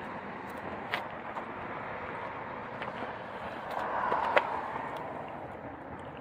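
Outdoor traffic noise from nearby road vehicles, which swells about four seconds in as a vehicle goes by, with a few faint clicks.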